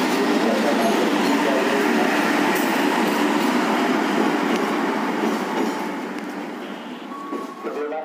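Passenger train carriages rolling slowly past a station platform, with a steady noise of steel wheels on the rails that fades over the last few seconds. Crowd voices mix in.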